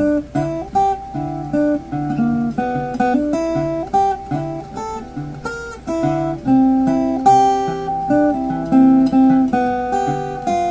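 Sunburst hollow-body archtop guitar fingerpicked in a blues style in the key of G, a thumb-picked bass line sounding under single melody notes in a steady, continuous run.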